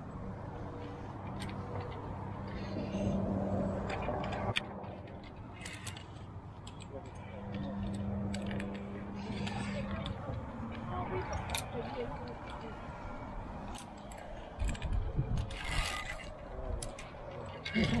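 Via ferrata carabiners clinking and scraping against the steel safety cable and iron rungs as a climber moves along the rock face: irregular sharp metallic clicks through the whole stretch.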